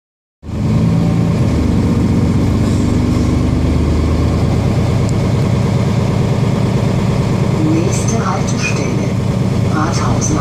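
Mercedes-Benz Citaro G articulated bus's diesel engine running steadily, heard from inside the passenger cabin. Voices come in near the end.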